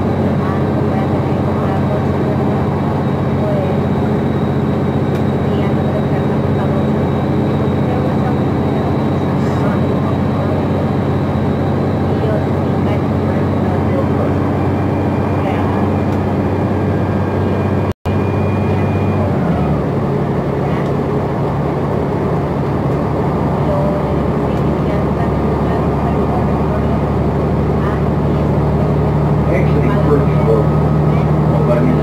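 Interior of a New Flyer XN60 articulated natural-gas bus cruising at road speed: a steady engine and drivetrain drone under tyre and road noise. The drone's pitch shifts a little about two-thirds of the way through, just after a momentary dropout of the sound.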